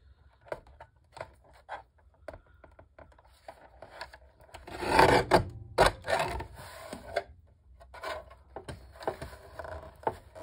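Deckle paper trimmer cutting a photo print: the blade rasps along the paper edge, loudest for a couple of seconds about halfway through, with small clicks and taps as the photo is handled and repositioned in the trimmer.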